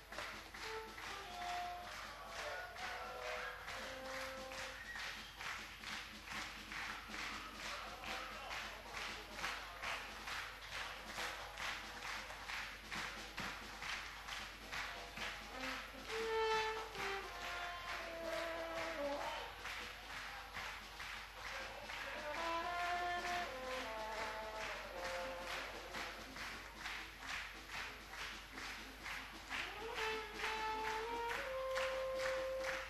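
Concert audience clapping in unison at a little over two claps a second, a steady rhythmic call for an encore. A few short melodic phrases sound over the clapping around the middle and near the end.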